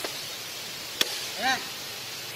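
A single sharp click about a second in, then one short call that rises and falls in pitch.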